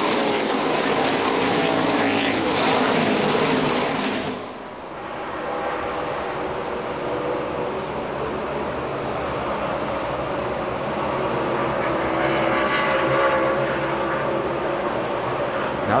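NASCAR Cup stock cars' V8 engines racing in a pack, with loud passes rising and falling in pitch for the first few seconds. About four and a half seconds in the sound drops suddenly to a steadier, more distant engine drone, which swells again near the end.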